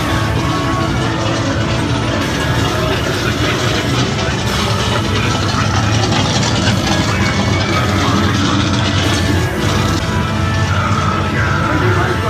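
Music from a dark ride's soundtrack playing over a steady low rumble.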